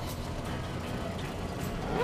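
Steady low rumble of a truck's engine and road noise heard from inside the cab while driving.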